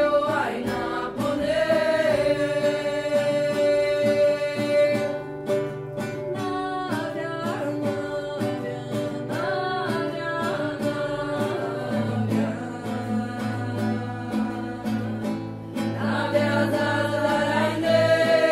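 Several voices singing a slow chant-like song together over a guitar, with long held notes.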